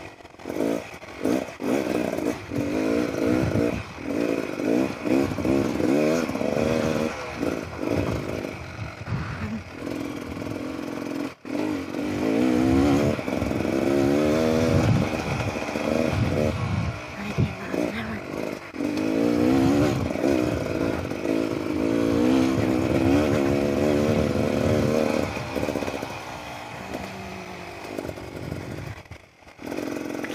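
Beta Xtrainer 300 two-stroke dirt bike engine being ridden hard, its pitch rising and falling again and again with the throttle. It drops off sharply for a moment about eleven seconds in and eases off near the end.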